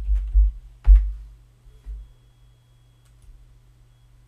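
Typing on a computer keyboard: a quick run of keystrokes with heavy low thumps through the desk, the loudest about a second in and another near two seconds, then only a couple of faint clicks.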